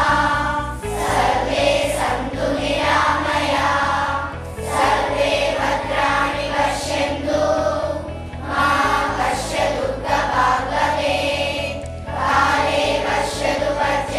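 Schoolchildren singing a prayer together as a choir, in sung phrases of about four seconds each with short breaks between them.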